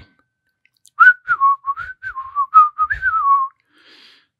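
A person whistling a short tune of about a dozen notes, starting about a second in and ending near three and a half seconds.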